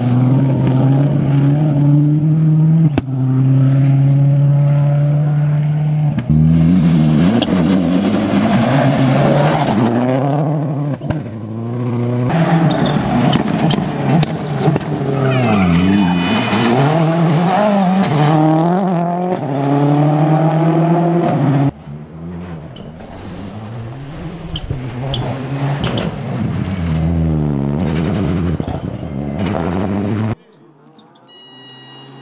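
Ford Focus WRC rally car's turbocharged four-cylinder engine running flat out past the camera, its pitch climbing and dropping again and again through gear changes and lifts. It is quieter and farther off in the last third.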